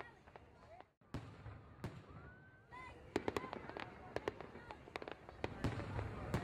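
Fireworks going off: a string of sharp pops and bangs, sparse at first and coming thick and fast in the second half.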